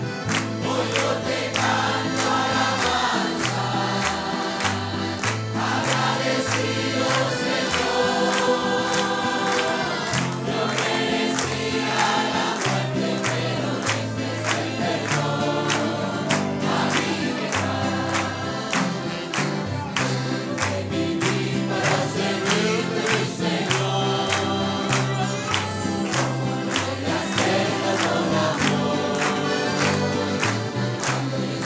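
Congregation singing a Spanish-language worship hymn together, with instrumental accompaniment: a moving bass line and a steady beat.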